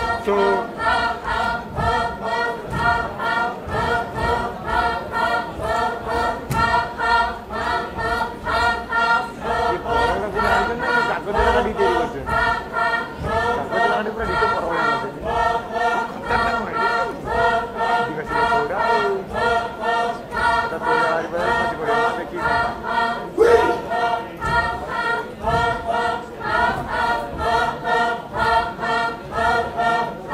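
A group of Naga dancers chanting in unison: a rhythmic folk chant of many voices, pulsing evenly at about two beats a second, with low thuds on the beats.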